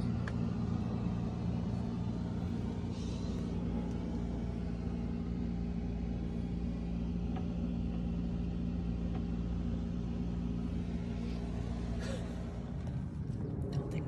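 Steady low hum of an idling motor, which fades away about two seconds before the end.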